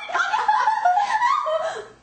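Young women laughing and giggling in high-pitched voices. The laughter stops shortly before the end.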